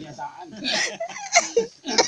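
People talking and laughing, with short breathy bursts of laughter.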